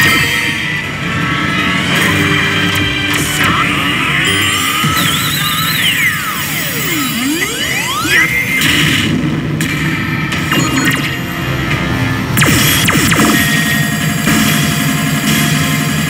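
A Re:Zero pachislot machine's own soundtrack: music with electronic game effects as the reels spin and stop. About six to eight seconds in, an electronic sweep falls in pitch and then rises again.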